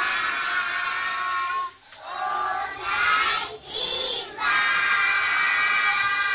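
A group of young children singing together in unison, high voices holding long notes, with short breaks about two and three and a half seconds in.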